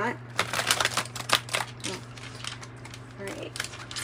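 A deck of oracle cards is shuffled by hand. A quick run of card slaps and flicks starts about half a second in and lasts over a second, followed by a few softer card sounds.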